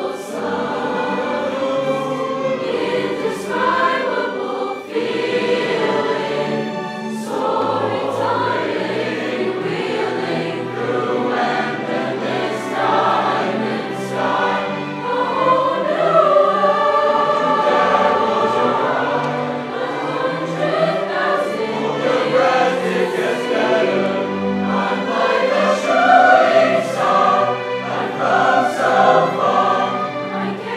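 Large choir of young voices singing a song together, accompanied by a school orchestra.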